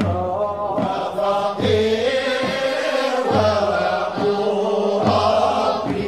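Group of voices chanting a Sufi samaa devotional song (madih) in unison, in long melodic phrases that rise and fall.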